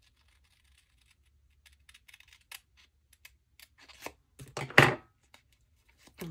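Scissors snipping a paper sticker sheet, heard as scattered short snips and paper rustles from about a second and a half in. A louder, longer paper rustle comes about four and a half seconds in.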